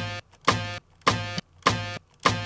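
A sampled music loop playing back through the DAW: a pitched note with a sharp attack repeats evenly about every 0.6 seconds, each one ringing briefly and dying away before the next.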